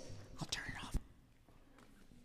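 A faint whispered voice in the first second, ending in a short sharp knock, then near-silent hall tone.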